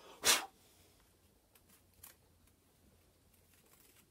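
A single brief rasping scrape as a small screwdriver is worked in the bore of a wooden toy wheel to clean out the hole, followed by a few faint handling clicks.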